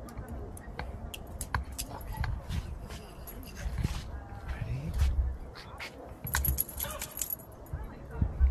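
Camera handling noise: a run of clicks and knocks over a low rumble of wind on the microphone. A brief metallic jingle follows about six seconds in.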